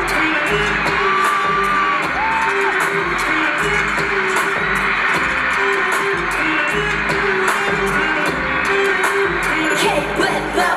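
K-pop girl-group song performed live: a pop backing track with a regular heavy bass beat under female singing.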